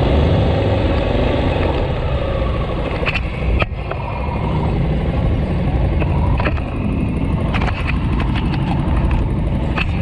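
Motorcycle engine running at low street speed, heard from on the bike, with traffic noise around it. A few sharp clicks come through, a pair at about three seconds in and more later on.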